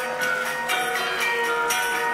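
Balinese gamelan playing: bronze metallophones ring with many sustained, overlapping tones, with sharper struck accents about once a second.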